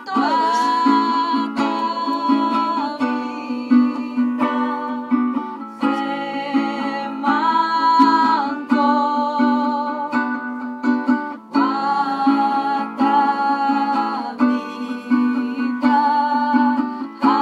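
Live acoustic song: a small guitar strummed in a steady rhythm under singing, with long held notes that glide between pitches and a short break a little after the middle.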